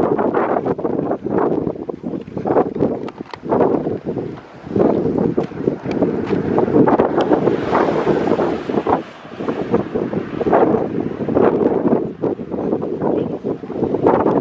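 Wind buffeting the microphone in irregular gusts, with a car passing close by about eight seconds in.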